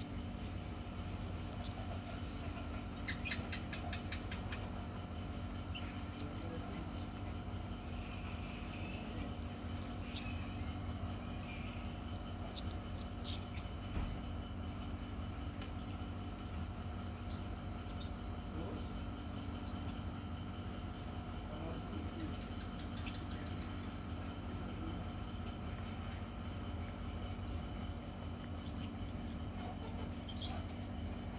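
Small birds chirping in short, high, rapidly repeated notes over a steady low hum.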